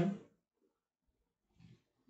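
A man's speaking voice trails off in the first moment, then near silence (room tone), with one faint brief sound about one and a half seconds in.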